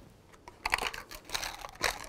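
Small thin plastic cup handled on a table: a string of crinkles and light clicks begins about half a second in, with a sharper click near the end.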